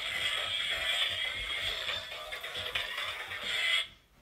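Tinny dance music from the small speaker of a toy iCarly remote, cutting off abruptly near the end.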